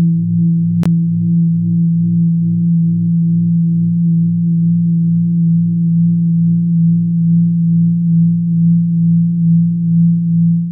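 Sustained low synth drone: a Polysynth chord circulating in the Bitwig Delay+ device's feedback loop against its compressor, dense and compressed, with a gentle even rhythmic pulsing as the low-cut EQ is moved. A single sharp click about a second in.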